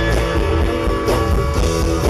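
Live blues-rock band: a Stratocaster electric guitar playing a lead over bass guitar and drums, with drum hits at a steady beat.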